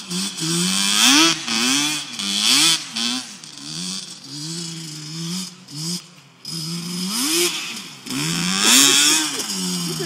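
ATV engine revving up and down as it is ridden around, its pitch climbing and dropping about once a second with the throttle.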